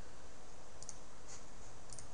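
A few faint computer mouse clicks, from about a second in, over a steady background hiss.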